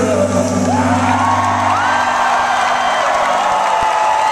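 A rock band's final sustained chord ringing out and fading about halfway through, while the concert crowd cheers and whoops, with rising whoops carrying over the noise.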